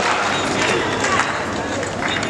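Audience applause in a large hall, a dense steady patter of many hands clapping with crowd voices mixed in, easing slightly toward the end.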